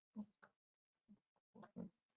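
Near silence broken by a few faint, brief snatches of a low voice, each cut short.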